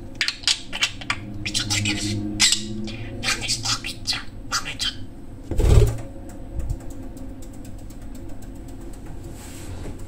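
Budgerigar chattering in rapid, sharp chirps for about five seconds, then a loud thump about halfway through as the bird jumps down, followed by a few faint light taps.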